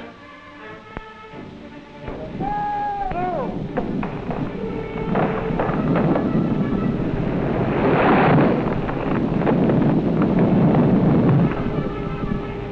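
A tall felled tree coming down: a long drawn-out call near the start, then a rising rush of crashing noise, loudest about eight seconds in, over a music score.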